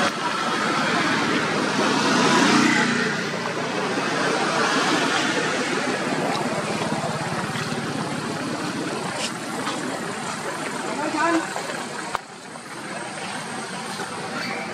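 A road vehicle running steadily, with indistinct voices mixed in.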